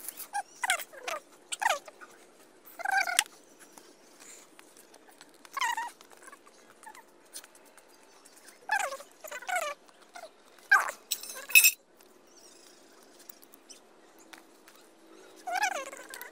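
A small animal crying in short, falling-pitched yelps, about ten of them spaced irregularly.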